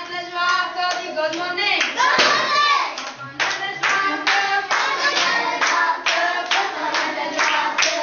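Young children singing together in a classroom. From about three seconds in, they clap along in a steady beat of roughly two to three claps a second.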